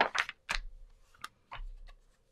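A few light clicks and taps as a sheet of copy paper is handled and a stamping platform is set down on it.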